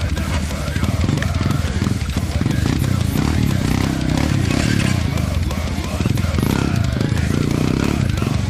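Dirt bike engine running close by, its pitch rising and falling as the throttle is worked.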